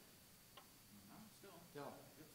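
Near silence: room tone, with a single faint click about half a second in and a soft voice starting near the end.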